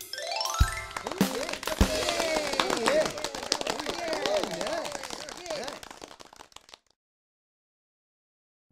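Cartoon song outro: a rising whistle-like glide, then a jumble of high chattering, voice-like sounds over dense crackling clicks, fading out to silence about seven seconds in.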